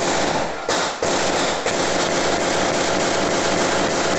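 Gunfire from a shootout, recorded on a phone: a dense, unbroken run of rapid shots with sharper cracks standing out under a second in and again after about a second and a half.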